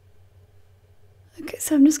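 Faint steady low hum, then a woman starts speaking about one and a half seconds in.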